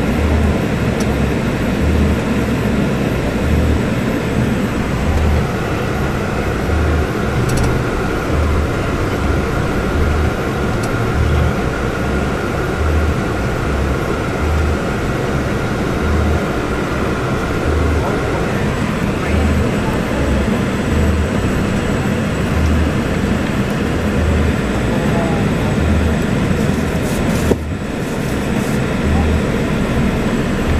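Volvo B450R double-decker coach on the move, its engine and road noise heard as a steady rumble inside the cabin. A faint steady whine sits over it for a stretch in the first half, and the sound dips briefly near the end.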